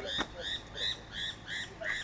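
A rapid, regular series of short, high chirping calls from a small animal, about four a second, each call rising and falling slightly in pitch.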